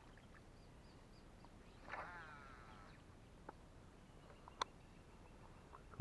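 Near silence with a faint bird call about two seconds in, a single call falling in pitch over about a second. A few faint high chirps come in the first second, and there is one sharp click late on.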